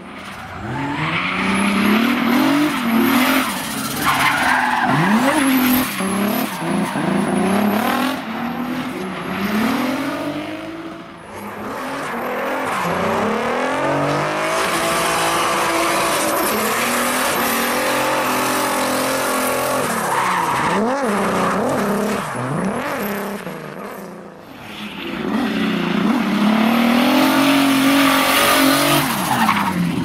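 Mercedes rally car's engine revving hard, its pitch climbing and falling again and again, while its tyres skid and squeal through donuts and drifts on asphalt. The sound drops off briefly twice, about eleven seconds in and again about twenty-four seconds in, then comes back up.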